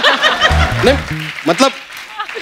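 A short comic music sting of a few deep, stepped bass notes, about half a second long, with studio audience laughter and chuckling under it.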